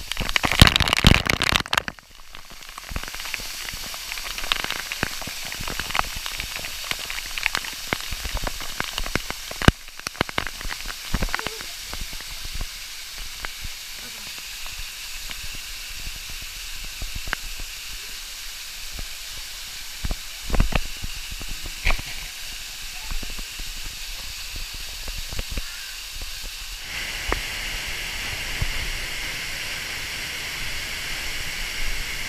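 Waterfall rushing, heard from behind the falling water as a steady hiss, with many sharp ticks and splats of spray hitting the action camera's housing. Water strikes the microphone loudly in the first two seconds, and the hiss grows brighter near the end.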